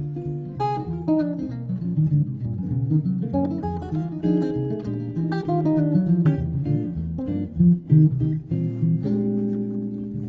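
Two archtop jazz guitars playing together: fast improvised single-note lines over chords on a rhythm-changes tune. The phrase resolves onto a held final chord about nine seconds in.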